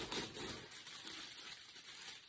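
Plastic rustling and crinkling as a clear-bagged item is pushed into a black plastic poly mailer, a little louder in the first half-second.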